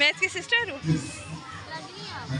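Children's voices: a high-pitched child's voice in the first second, then the general chatter of children in the background.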